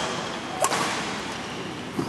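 A badminton racket strikes a shuttlecock once, a sharp crack about two-thirds of a second in that rings on in the large hall's echo.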